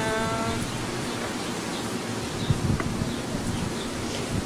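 A young child's short voice, rising in pitch and then held, right at the start. After that comes steady outdoor background noise with irregular rustling, as of feet moving through grass.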